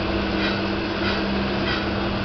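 Saw-blade sharpening machine running steadily with a constant hum, a faint swish repeating about one and a half times a second as it works tooth by tooth.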